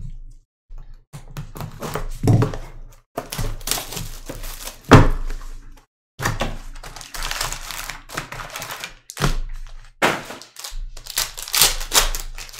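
Cardboard trading-card hobby box being handled and opened: irregular thunks, scrapes and rustles, with a loud thunk about five seconds in. Near the end, a foil card pack crinkles as it is torn open.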